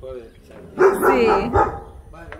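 A dog barking, with a person saying "sí" about a second in.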